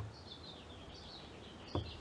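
A bird twittering faintly in the background, a wavering run of high chirps lasting about a second and a half, over a steady low background rumble. A short click at the very start and another near the end.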